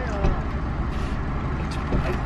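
Steady low rumble and hum of a car cabin, with a few faint clicks of a plastic spoon in a takeout container.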